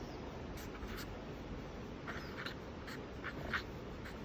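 Felt-tip marker writing on paper: a few short, faint squeaky strokes spread over a few seconds.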